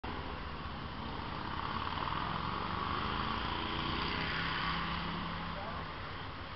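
Indistinct chatter of a small group of people over the noise of a vehicle, which swells toward the middle and eases off near the end.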